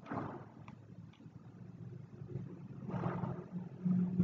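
Quiet background with a low, steady hum and two faint clicks about a second in.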